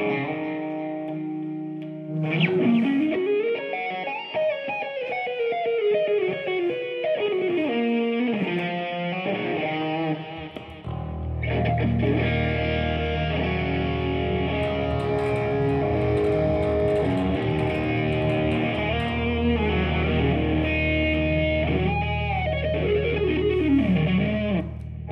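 Electric guitar played through an amplifier and effects: held chords, then a run of sliding, bending lead notes. About halfway a deep, steady low note comes in under the guitar playing.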